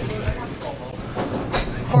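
Steady low hum over room noise, with faint, quiet speech coming in toward the end.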